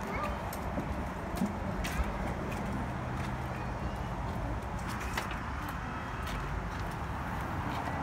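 Steady outdoor background noise with a faint low hum, broken by a few scattered clicks and taps.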